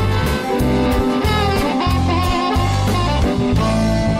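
Live blues band playing an instrumental passage: a harmonica cupped against a handheld vocal microphone plays bending, held notes over guitar and drums, with a steady cymbal beat.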